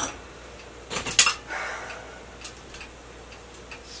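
A utensil knocking and scraping against a frying pan as raw eggs are spread over cooked greens and mushrooms. There are two sharp clinks about a second in, a short scrape, then a few light ticks.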